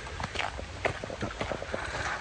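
Footsteps of a person walking on a woodland trail, about two to three short, irregular knocks a second, over a soft rustle of moving clothing and gear.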